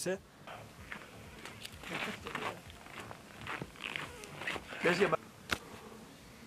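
Soft, irregular rustling of clothing and handling, with a short laugh about five seconds in and a single sharp click just after it.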